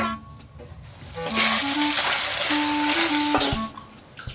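Food sizzling in hot oil in a pan: a dense hiss that starts a little after a second in and cuts off shortly before the end, with light background music underneath.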